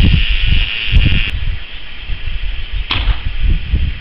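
Wind buffeting the microphone in gusts. About three seconds in comes a single sharp crack with a short falling whoosh, an air rifle shot.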